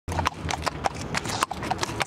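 Hooves of walking Standardbred horses clip-clopping on a concrete sidewalk: a string of sharp knocks, about four a second.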